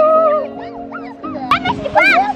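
A person's high-pitched squeal: one long rising cry at the start, then short high yelps near the middle and end, over background music.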